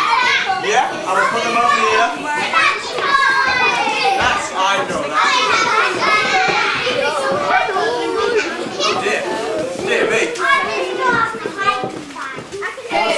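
A group of young children chattering and calling out over one another, many high voices at once without a break.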